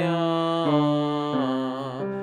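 A bass-baritone male voice singing a descending scale warm-up, three held notes each stepping lower about every 0.7 s, with the vowel shifting through E, A and AH to work on resonance.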